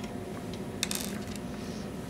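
Light metallic clicks of an SMA 50-ohm calibration load being fitted and threaded onto a network analyzer's test-port connector, a short cluster of clicks about a second in, over a steady faint hum.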